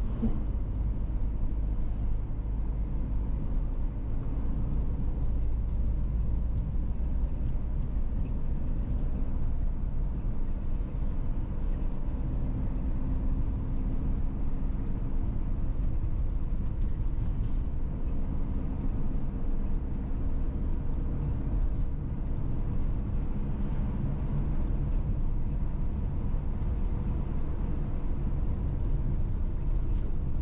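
Car driving at steady road speed: a continuous low rumble of engine and tyres on asphalt, with the engine hum drifting slightly up and down.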